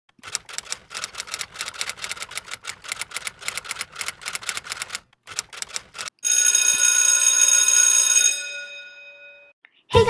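Typewriter sound effect: a fast run of key clacks for about five seconds, a brief pause and a few more strikes, then a bell ding that rings on for about two seconds and fades away.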